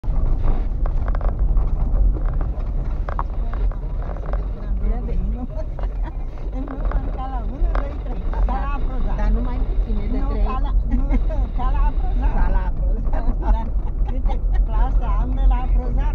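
Car cabin noise while driving slowly over a rough gravel road: a steady low rumble of engine and tyres. Indistinct speech sounds over it from about five seconds in.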